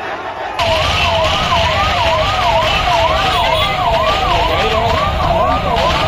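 Vehicle siren in a fast rising-and-falling yelp, about two sweeps a second, starting abruptly about half a second in.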